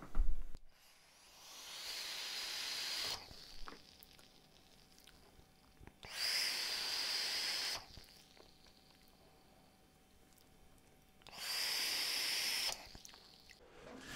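Three hissing draws on a sub-ohm vape, each lasting about a second and a half, as air rushes through the atomizer while the coil fires on a freshly wetted wick.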